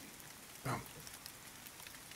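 Steady rain, a recorded rain bed running under a quiet reading voice, with one softly spoken word a little under a second in.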